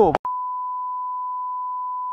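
A steady electronic beep: one pure, unchanging tone like a test tone, starting about a quarter second in, right after speech cuts off abruptly.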